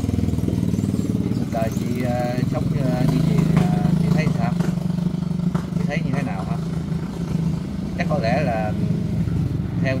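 A small engine running steadily with a low, even drone that swells a little from about three to five seconds in, and brief snatches of voice over it.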